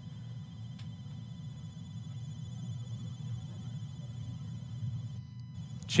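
Faint, steady low rumble of a 1952 Cessna 170's six-cylinder piston engine and propeller as the taildragger comes in on a low, shallow approach under power.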